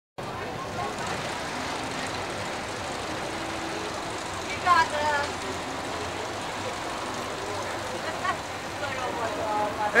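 A steady background din with people's voices over it, including one short, loud shout about five seconds in.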